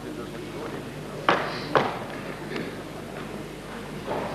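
Two sharp claps, about half a second apart, over the low background of a large hall.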